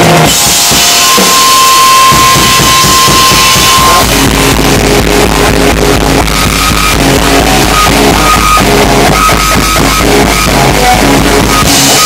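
Rock band playing loudly, live: electric guitar and drum kit. A cymbal crash just after the start and a long held note, then from about four seconds in a heavy low riff with steady drumming.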